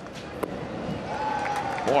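A single sharp pop of a pitched baseball hitting the catcher's mitt for strike three, followed by the crowd cheering and growing louder, with one long held call rising above it.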